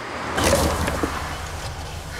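A car passing on a road. About half a second in, a low, steady vehicle rumble sets in.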